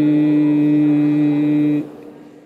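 Chanted song: a voice holds one long, steady note that stops shortly before the end and fades out.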